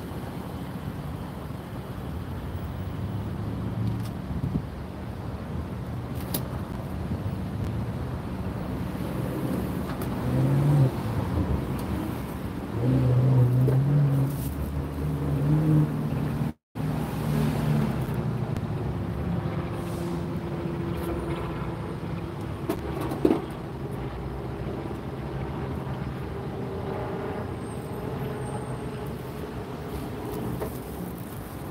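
Street traffic: a steady low rumble of vehicles, with an engine passing louder about a third and halfway through. A brief cut in the sound comes just after, and a single sharp knock near the end.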